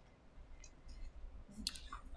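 Faint clicks and mouth sounds of a man sipping from a cup, with a sharper click near the end.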